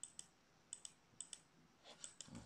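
Faint computer input clicks, in quick pairs about four times, as text is edited on a tablet.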